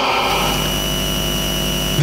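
Steady hiss and hum from the church's microphone and sound system, with a faint high steady whine, while the preacher is silent.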